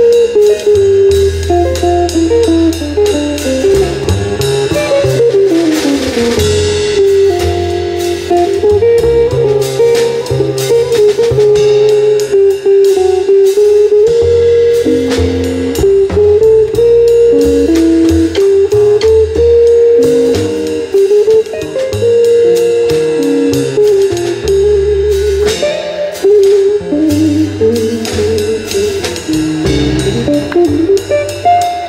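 Semi-hollow-body electric jazz guitar playing a single-note improvised line, accompanied by double bass and a drum kit with cymbals.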